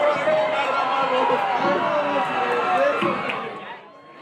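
A singer's voice from a recorded pop song played over loudspeakers for a dance routine, with crowd noise under it; the sound drops away sharply just before the end, as at a cut in the song mix.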